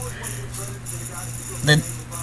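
A pause in a man's talking, filled by a steady low hum and faint background noise. He starts speaking again near the end.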